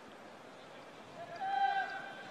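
Faint open-stadium ambience, then a single high-pitched held shout lasting under a second, about a second in.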